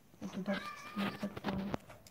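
A domestic cat meowing faintly a few times.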